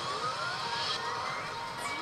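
Electronic sound effect from a To Love-Ru Darkness pachislot machine: a steadily rising sweep tone, with a second short rise near the end, over the constant din of a pachinko parlor.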